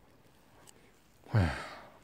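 A man's voiced sigh, its pitch falling as it trails off into breath, about a second and a half in after a near-silent stretch.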